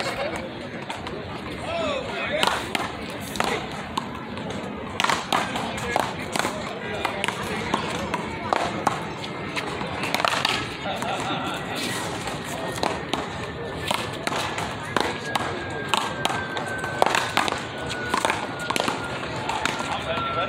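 Big-ball paddleball rally: a string of irregularly spaced sharp cracks as the paddles strike the ball and the ball hits the concrete wall and court, with players' voices underneath.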